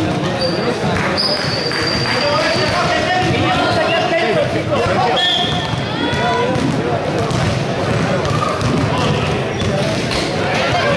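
Children's voices calling and shouting over each other in a sports hall, with a basketball bouncing on the court floor.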